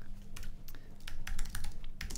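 Typing on a computer keyboard: an irregular run of quick key clicks as code is entered.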